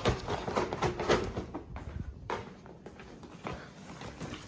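Hurried footsteps on a tiled floor, with knocks and rustle from the phone being carried at a quick pace.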